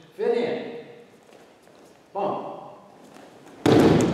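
One heavy thud about three and a half seconds in, the loudest sound here: a judoka thrown with a hip throw landing on the judo mats.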